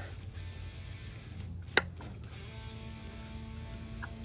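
Soft background guitar music over a low hum, with one sharp snip a little under two seconds in: cutters going through one of the hub motor's thin 18-gauge phase wires.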